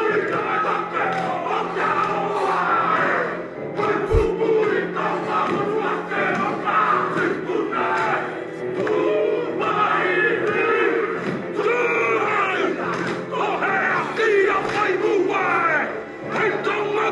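A group of men performing a haka, chanting and shouting the Māori words together, over a steady music bed, with a low thump about four seconds in.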